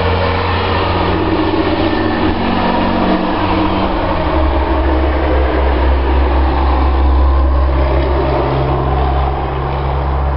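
A motor vehicle's engine running close by, a steady low drone that drops in pitch about four seconds in.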